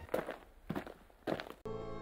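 Three footsteps, a little over half a second apart. Music with sustained string notes comes in near the end.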